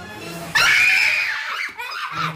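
A high-pitched scream breaks out suddenly about half a second in and lasts nearly a second over quiet background music, followed by a shorter vocal cry near the end.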